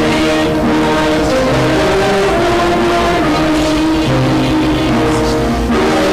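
Live worship band music: sustained chords over a moving bass line.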